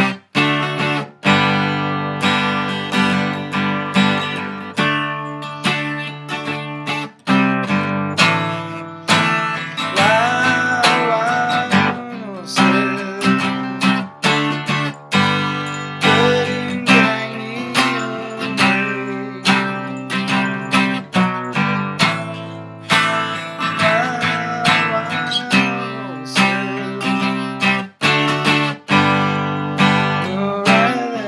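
Epiphone Dove acoustic guitar in open-G tuning, strummed through a run of chord changes with a few brief breaks between strums.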